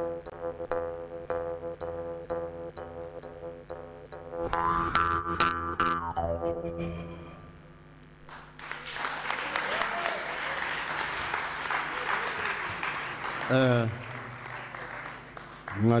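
Jaw harp (mouth harp) playing a steady drone with a rhythmic pulse, its overtones sweeping up and down as the mouth shapes them, fading out about eight seconds in. An audience then applauds, and a voice calls out briefly near the end.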